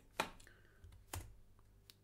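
Computer keyboard: three separate keystrokes, the first about a fifth of a second in, the loudest about a second later and a fainter one near the end.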